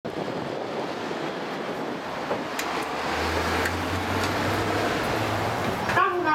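Steady outdoor road-traffic and wind noise, with a low steady hum joining about three seconds in and a few faint clicks.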